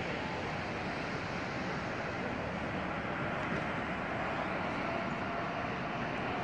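Steady city background noise, mostly the continuous rumble of distant traffic, with no distinct events; a faint steady hum comes in during the second half.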